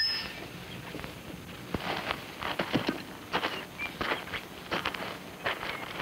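Leg chains clinking irregularly, with shuffling footsteps.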